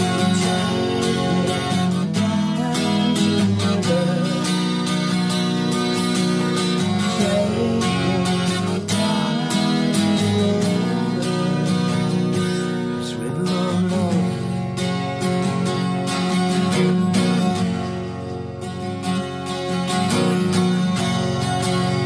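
Acoustic guitar strummed steadily through an instrumental break in a song, with no singing.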